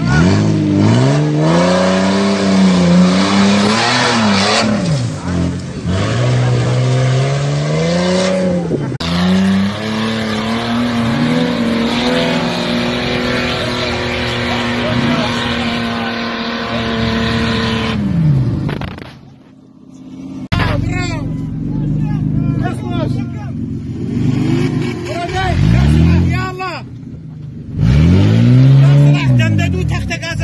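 Off-road 4x4 SUV engines revving hard under load as they climb steep dirt slopes, the pitch rising and falling again and again as the throttle is worked.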